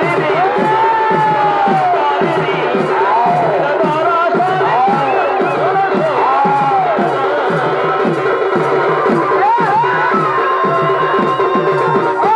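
Live Purulia Chhau dance accompaniment: a gliding reed-pipe melody over steady drum beats, with a crowd cheering.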